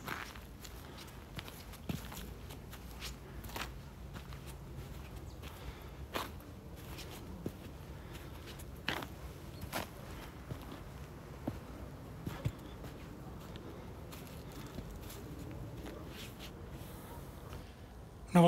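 A hiker's footsteps on a dry grassy, stony dirt path: irregular steps and scuffs, roughly one a second, over a faint low rumble.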